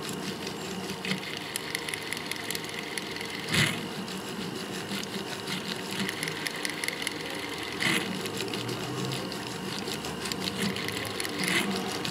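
A fine steel setting tool working the gold around the small stones of a pavé ring, with small scrapes and clicks over a steady hum. Three louder short scrapes come about four seconds apart, a little after the start, near the middle and near the end.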